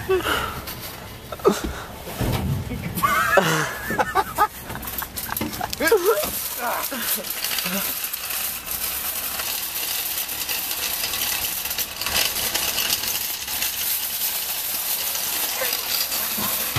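Laughter, then from about six seconds in a steady rattling rush with many small clicks: a shopping cart's wheels rolling over asphalt.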